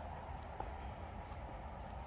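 Quiet outdoor background with a low, steady rumble and a single faint tick about half a second in.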